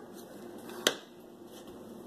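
A single sharp click about a second in, over faint room sound.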